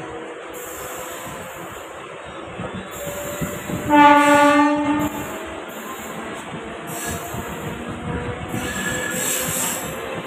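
Passenger train running on the rails, heard from its open doorway: a steady rumble and clatter of wheels on track. About four seconds in, a train horn blows once for about a second, the loudest sound.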